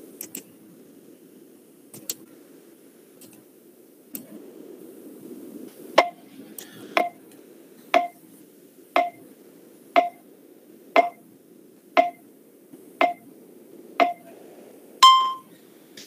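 Short electronic ticks, one a second, nine in a row, followed by a single longer, higher beep, the pattern of a countdown timer running out. A faint background hum and a few light clicks sit under it.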